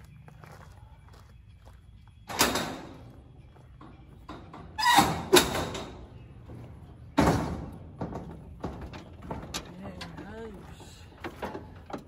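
Four loud slams, each with a short ringing tail: one about two seconds in, two close together around five seconds, and one just after seven seconds, over a faint low hum.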